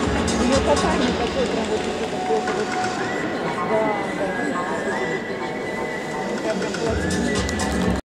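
Music playing over an ice arena's sound system, with a murmur of spectators' voices; in the second half long held high notes come in.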